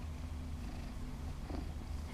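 Domestic shorthair cat purring steadily close to the microphone.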